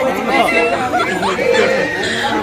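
People talking and chattering, with several voices overlapping.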